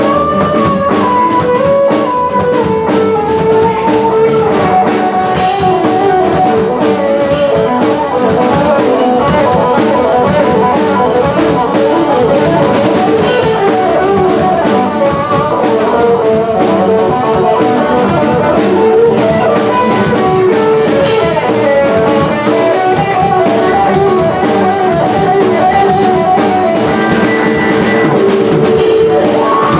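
Live band playing an instrumental passage, an electric guitar carrying the melody over a drum kit.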